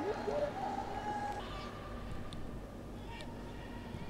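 Faint football-stadium ambience with a drawn-out high call, one held pitch that steps up slightly partway, from about half a second in to just under two seconds.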